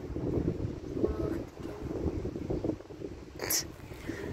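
A large dog sniffing at a person's hand, with one sharp sniff near the end.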